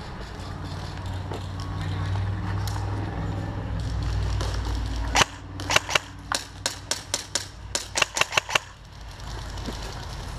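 Airsoft gun firing about a dozen quick single shots in an uneven string, starting about five seconds in and lasting some three seconds, each a sharp snap. Before the shots, a steady low rumble.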